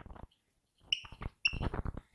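Marker pen writing on a whiteboard: a brief scratch at the start, then a run of quick strokes in the second half, with two short high squeaks of the tip on the board.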